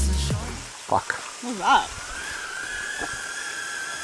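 Electronic backing music fades out, leaving the steady rush of a waterfall and stream. A click comes about a second in, then a short vocal exclamation, and a thin steady high whine runs under the water from there on.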